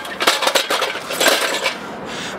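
A rapid run of light clinking and rattling clicks that dies away near the end.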